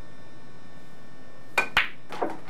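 A pool shot: two sharp clicks close together near the end, a cue tip striking the cue ball and phenolic pool balls knocking together, the first with a brief ring.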